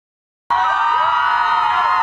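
Silence for half a second, then a group of young dancers screaming and cheering together, many high voices held in long shouts at once.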